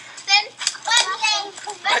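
Children talking and calling out in high voices.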